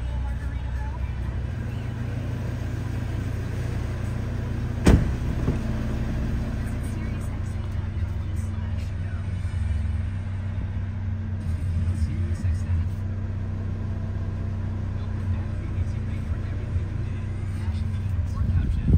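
A 2023 Audi RS 3's turbocharged 2.5-litre five-cylinder engine idling steadily, heard from inside the cabin, with a single sharp thump about five seconds in.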